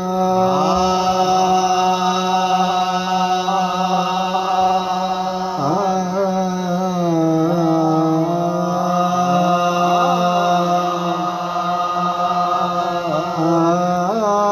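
Harmoniums of a qawwali ensemble playing a slow, unmetred opening: a steady low drone with held notes and a wavering, sliding melodic line above it, with no drumming yet.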